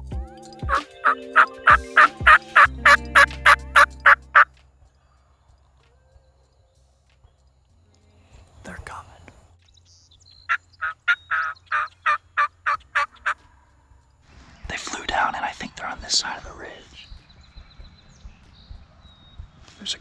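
Wild turkey calling: a long run of rapid, evenly spaced calls, a shorter run of the same about halfway through, then a gobble a few seconds later.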